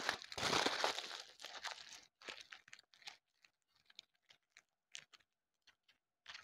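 Aluminium foil being crumpled and pressed by hand: a dense crinkling for about the first second, then scattered crackles that thin out and grow fainter.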